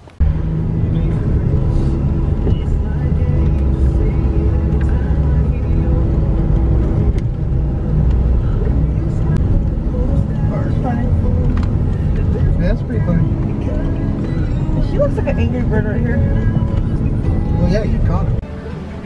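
A car driving along a road, heard from inside the cabin: steady, loud low engine and road noise that starts suddenly just after the start, with music and a voice over it.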